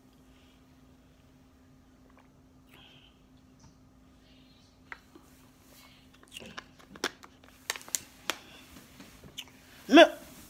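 Quiet gulping from a plastic water bottle over a faint steady hum, then scattered clicks and crinkles of the plastic bottle being handled, and a loud knock at the very end as the phone is bumped.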